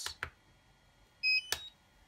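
DJI Phantom 4 remote controller being switched on at its power button: a couple of faint button clicks, then a short, high electronic power-on beep of a few stepped tones about a second in, followed by a sharp click.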